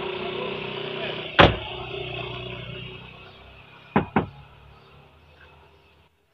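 A Hyundai Avega's car door shut with a single loud thud about a second and a half in, then two quick clicks around four seconds in, over a steady low hum that fades away toward the end.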